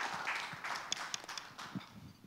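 Scattered applause from a small audience, thinning out and fading away.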